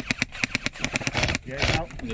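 Airsoft rifle firing a rapid string of sharp shots, about nine a second, that stops after a little over a second.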